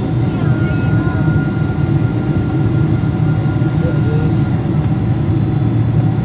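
Steady airliner cabin noise on approach to landing: a loud, even rumble of engines and airflow, with a thin steady whine that stops about four and a half seconds in.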